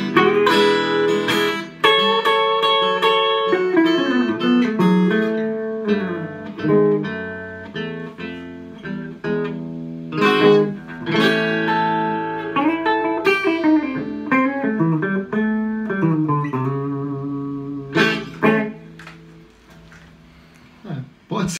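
Two guitars, one of them an archtop electric, playing a blues together without vocals: picked single-note lines with bent notes over chords. It closes with a couple of final strums near the end.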